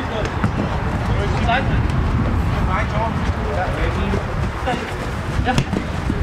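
Scattered distant shouts and calls from football players on the pitch over a steady low rumble, with a couple of sharp thuds from the ball being kicked or headed, one just after the start and one near the end.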